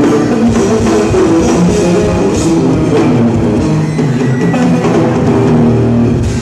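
Electric bass guitar and drum kit playing live together: a quick run of short bass notes over busy drumming, recorded loud from within the crowd.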